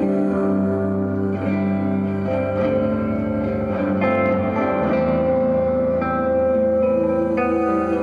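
Two electric guitars playing slow ambient music: sustained, reverb-heavy notes and chords ring into one another, with new notes picked in a few times.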